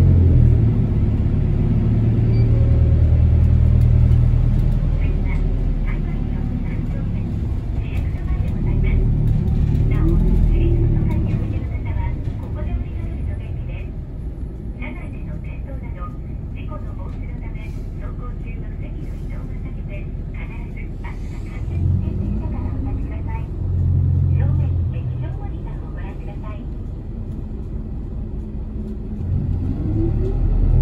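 Small route bus's engine and road rumble heard from inside the cabin of the moving bus, the engine note rising twice, about two-thirds of the way through and again near the end, as it pulls on.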